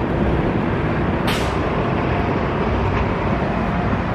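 City street traffic running steadily, with a short sharp hiss a little over a second in.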